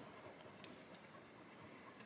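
Very faint scratching at the glittery coating of a paper scratch-off card, with a few light ticks.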